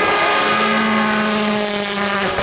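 Hyundai i20 WRC rally car's turbocharged four-cylinder engine at full throttle as the car speeds past, the revs held at one steady high pitch from about half a second in.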